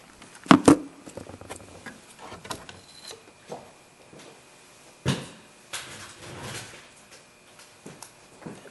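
Knocks, clicks and rubbing of plastic and metal parts being handled in a car's engine bay as the battery hold-down area is cleared and the battery is taken out, with two sharp knocks about half a second in and another knock about five seconds in.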